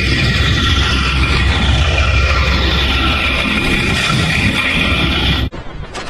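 Loud, dense, electronically distorted noise with a deep rumble and a hiss that slowly sweeps downward, cutting off abruptly about five and a half seconds in.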